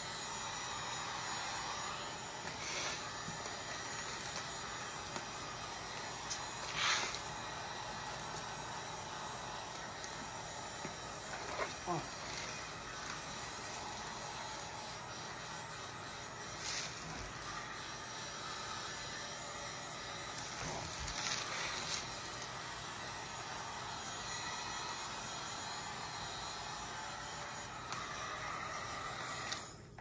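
Electric heat gun running steadily, blowing hot air to shrink plastic wrap around a gift, with a few short rustles of the film. It cuts off just before the end.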